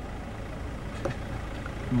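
Steady engine and road rumble heard from inside a moving vehicle at highway speed, with a low hum and one faint click about a second in.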